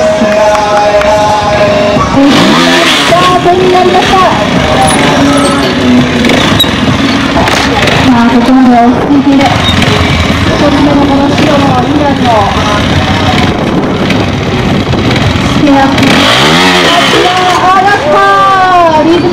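Trials motorcycle engine blipped in short rising-and-falling revs, twice: about two seconds in and again near the end, as the bike climbs a stacked-pallet obstacle. A voice talks loudly over it throughout.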